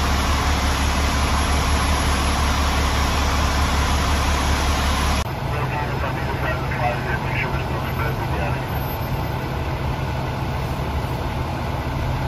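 Fire engines running at the scene, a loud steady low engine rumble. About five seconds in it cuts to a quieter, steadier hum from engines further away.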